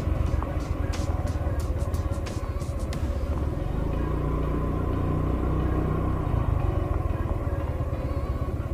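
Rusi Gala 125 scooter's small single-cylinder engine running steadily under way, with road and wind noise. Several sharp clicks fall in the first three seconds.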